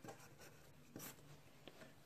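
Faint scratching of a pen writing on paper, a few short strokes.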